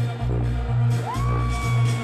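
Live dancehall/ragga music played loud through a concert PA, with a strong repeating bass line. About a second in, a high note rises and is held over the beat.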